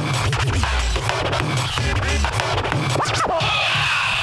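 Turntablist scratching a vinyl record through the mixer over a hip-hop beat with heavy bass: rapid choppy scratch cuts, with longer rising and falling scratch sweeps about three seconds in.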